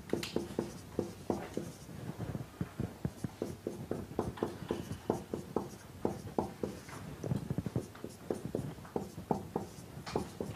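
Writing out equations by hand: a steady run of quick, light taps and short strokes, several a second, in a small room.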